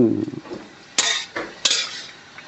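A wire mesh skimmer knocking against the side of a metal wok twice, about a second in and again about half a second later, while squid is stirred in boiling water.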